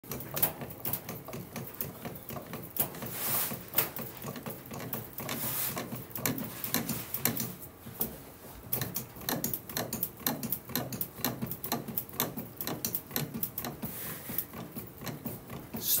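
A composite baseball bat barrel is rolled back and forth by hand under pressure between the rollers of a bat-rolling machine, with quick irregular clicking and crackling that grows denser in the second half. The crackle is the composite barrel breaking in.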